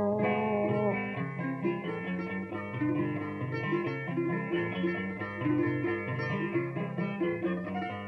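Instrumental interlude of Cuban punto guajiro: plucked string instruments, guitar among them, play the tune between sung décima verses, a low moving bass line under a quicker melody.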